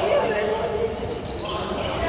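Young people's voices calling and chattering, echoing in a large sports hall, over repeated low thuds.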